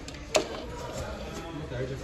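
A plastic Mondial steam iron being picked up and handled, with one sharp click about a third of a second in. Faint voices murmur in the background.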